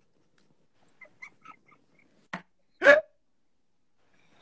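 Laughter: a few faint snickers, then two short high-pitched yelps of laughter a little past halfway, the second one louder.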